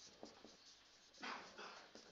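Faint squeaking and scratching of a marker pen writing on a whiteboard, a few short strokes with one slightly louder stroke a little past the middle.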